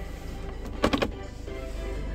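Music playing from the car's FM radio inside the cabin, over a steady low hum. A quick cluster of sharp clicks just under a second in is the loudest sound.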